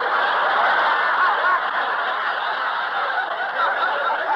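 Studio audience laughing steadily, heard through a narrow-band 1949 radio broadcast recording.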